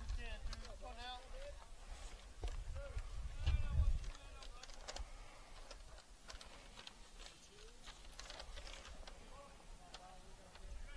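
Distant voices calling out across an outdoor baseball field, with scattered sharp clicks. A low rumble, like wind on the microphone, swells about three and a half seconds in.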